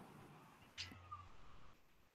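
Near silence: faint room tone of a video-call line, with one faint, brief sound a little under a second in.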